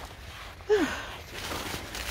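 A man's short grunt of effort, falling in pitch, about a second in, as he climbs over an obstacle, with a brief rustle and a low rumble from the handheld microphone.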